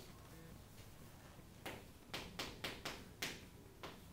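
Chalk tapping and scraping on a chalkboard as a number is written: a quiet start, then a quick run of about eight sharp taps through the second half.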